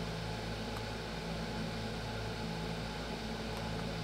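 Steady background hum and hiss, like a fan or air conditioner running in the recording room, with no other event standing out.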